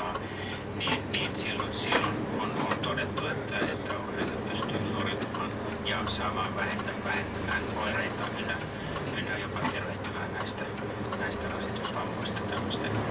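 City bus engine running with a steady low drone, heard from inside the bus as it moves slowly, with indistinct speech over it.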